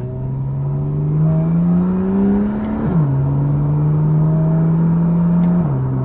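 Porsche 991 Carrera 4's flat-six engine with sport exhaust, heard from inside the cabin while accelerating. The revs climb steadily for about three seconds and drop sharply at an upshift of the PDK gearbox, then hold steady before a second quick drop at another upshift near the end.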